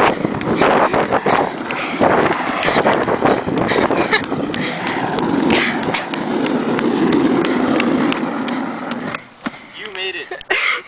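Skateboard wheels rolling over asphalt under a loaded cardboard box, a steady rumble with rattles and clicks, as someone runs alongside pushing it. The rolling stops abruptly about nine seconds in.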